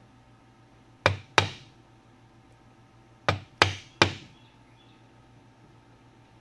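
A wood chisel struck with a mallet to chop into the corner of a wooden frame: five sharp knocks, two about a second in and three quick ones between about three and four seconds in.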